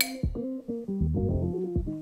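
Instrumental background music of plucked guitar and bass notes, opening with a sharp click.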